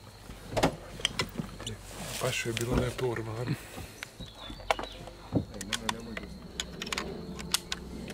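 Scattered sharp clicks and knocks from handling a scoped hunting rifle and its cartridges as it is taken from its case and its action is worked, with low voices between the clicks.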